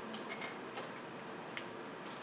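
Quiet room tone with a handful of faint, irregular clicks.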